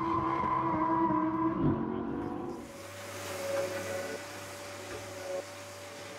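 A drifting car's engine note and tyre squeal, held steady, dying away about two and a half seconds in to a quieter, steady hum.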